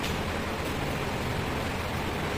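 Steady background room noise: an even hiss with no speech and no distinct events.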